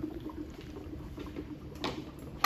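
Dry ice bubbling faintly in water inside a glass jar, with one light click near the end.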